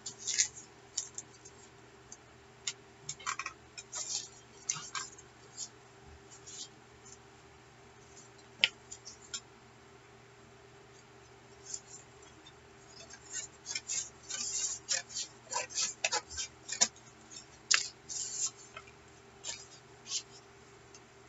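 Paper rustling and crinkling as sheets of painted paper and junk mail are shuffled and laid onto a journal page, in short scattered bursts that grow busier in the last few seconds, over a faint steady hum.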